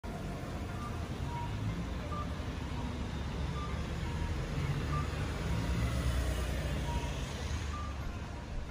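Street ambience: a steady low rumble of road traffic, with faint short high-pitched beeps recurring every second or so.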